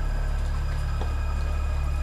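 A steady low hum, with a faint click about a second in.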